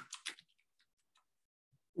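A few quick computer keyboard key clicks in the first moment, then near silence.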